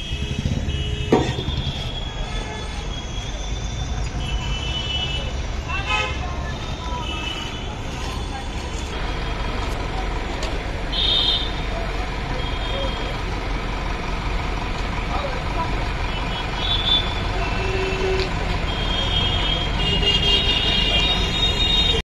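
Road traffic running over a steady low rumble, with vehicle horns tooting briefly now and then.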